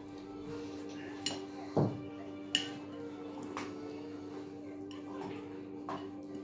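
Cutlery and a plate clinking a few times, light sharp clinks spread out with one duller knock among them, over a steady low hum.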